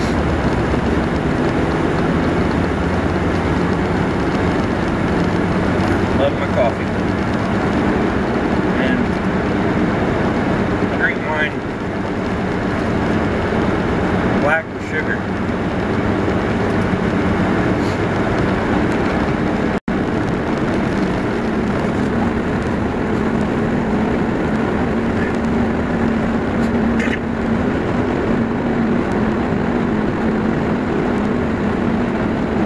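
Car driving along a road, heard from inside the cabin: steady engine hum and road noise, with a few short, faint squeaks now and then. The sound cuts out for a moment about two-thirds of the way through.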